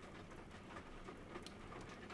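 Faint, steady rain ambience sound effect.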